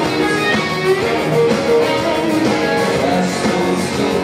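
Rock band playing live, electric guitars to the fore over drums.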